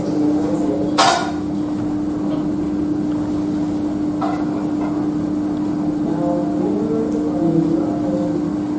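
A steady, single-tone hum in a quiet room, with a sharp tap about a second in and a fainter one around four seconds.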